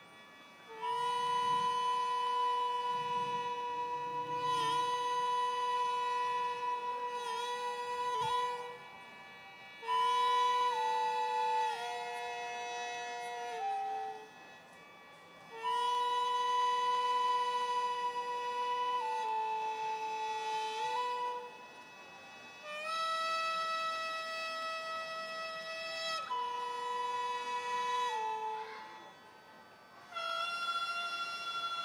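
Gagaku ensemble of ryūteki flute, hichiriki double-reed pipe and shō mouth organ playing slow, long held notes, several pitches sounding together, in phrases broken by short pauses every few seconds.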